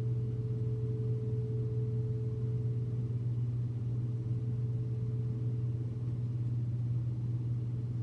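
A steady low hum with a fainter, higher steady tone above it, unchanging throughout.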